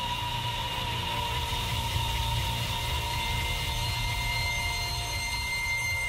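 Sustained trailer-score drone: a low rumble under several steady, high held tones. A further high tone enters about halfway through.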